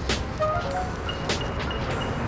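Background music with a steady beat, about one beat every half second or so, over the hum of city traffic.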